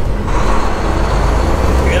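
Semi-truck's diesel engine heard from inside the cab as the truck pulls out onto the highway: a steady low drone that grows a little louder about a third of a second in.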